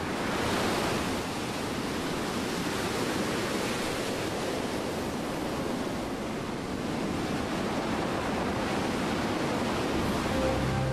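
Storm-driven sea: waves surging and wind blowing in a steady, loud rush of noise.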